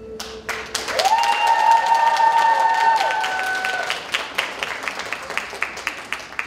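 Audience applause breaking out as the last held note of the string music fades, with one long high cheer from the audience about a second in; the clapping thins to scattered claps near the end.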